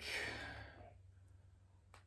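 A man's breathy sigh, an unvoiced exhale that fades out within about a second, followed by near silence.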